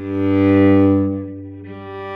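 Cello bowed on two long notes in turn, G with the fourth finger on the D string and the open G string, an octave apart, sounded one after the other to check that they match in tune. The first note is louder, and the second follows with almost no break.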